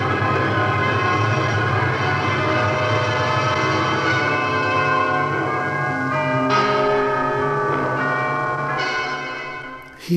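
Bell-like ringing tones sounding together in sustained chords, with new notes entering about four, six and a half and nine seconds in, fading out just before the end.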